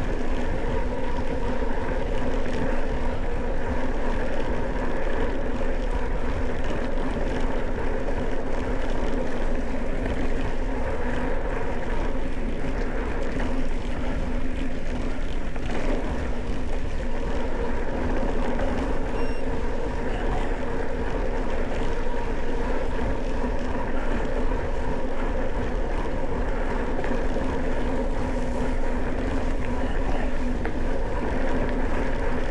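Mountain bike rolling along a dirt farm track: steady tyre and riding noise with a constant low drone, unbroken throughout.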